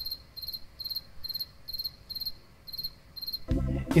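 Cricket chirping: short, trilled chirps in a steady rhythm of about two to three a second, stopping shortly before the end. A louder low noise starts just after the chirps stop.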